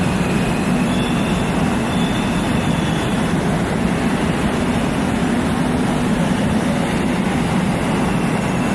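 Electric train running alongside a station platform: a loud, steady noise with a faint high wheel squeal in the first few seconds.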